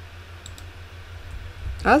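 A faint single click from a wireless computer mouse about half a second in, over a low steady hum. A woman's voice begins just before the end.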